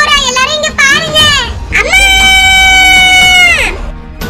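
A very high-pitched character voice wailing with wavering pitch, then breaking into one long, held scream that falls away just before the end.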